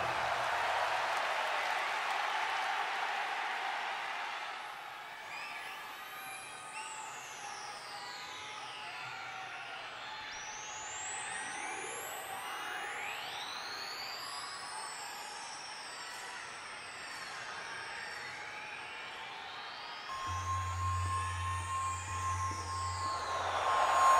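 Arena crowd cheering and applauding as a rock song ends, fading over the first few seconds. Then electronic sound effects with tones sweeping slowly up and down, overlapping. A low steady hum and a steady tone come in near the end.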